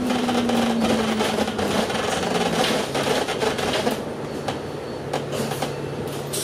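Inside a moving double-decker bus: the engine drones while the cabin fittings rattle continuously. The engine note drops in pitch over the first two seconds, then holds at a lower steady pitch, and the sound eases slightly about four seconds in.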